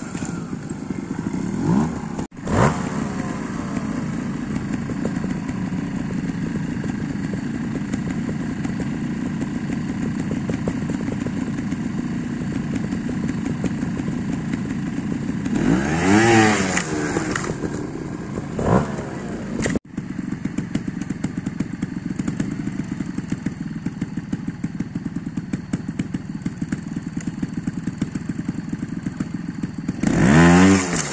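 Trials motorcycle engine running steadily, with a few sharp revs that rise and fall quickly, the strongest a little past halfway. The sound cuts out for an instant twice.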